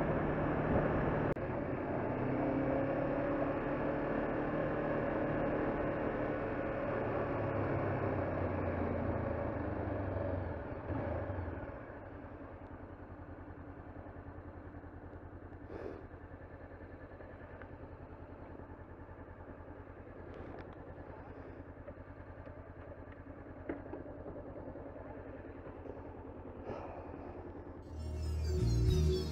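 2013 Honda CBR500R's parallel-twin engine running under way, its pitch wavering. About eleven seconds in it drops to a steady, quieter idle as the bike slows into a car park, with a few faint clicks.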